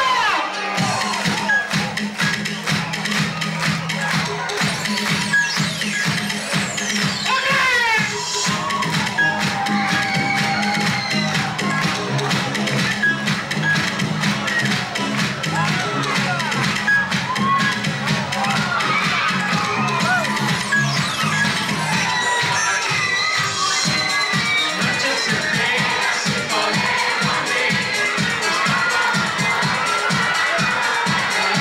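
Live synth-pop music played through a club sound system, with the crowd cheering and shouting over it. Sustained low synth notes carry the first two-thirds, then a steady dance beat comes in.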